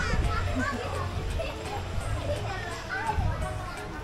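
Children's voices and chatter from people playing at a swimming pool, heard at a distance over a steady low hum.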